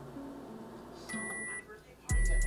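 A microwave oven's end-of-cooking beep as its timer runs out: one steady, high electronic tone lasting about half a second, sounding about a second in.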